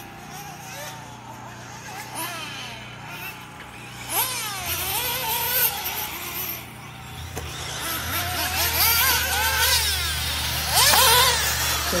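1/8-scale nitro RC buggy engines revving, their high whine rising and falling in pitch as the throttle opens and closes, loudest about four seconds in and again near the end.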